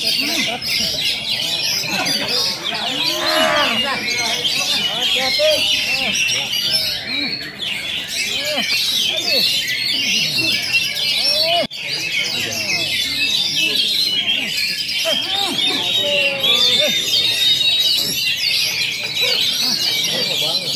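Several caged oriental magpie-robins (kacer) singing at once in a contest, a dense, unbroken chorus of quick chirps and whistles, with people's voices murmuring underneath.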